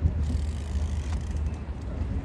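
A superyacht's engines running with a steady low rumble as it manoeuvres slowly.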